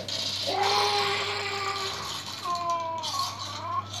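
An infant crying in two drawn-out wails, a steadier one starting about half a second in and a higher, wavering one in the second half, over a rattling shaking sound.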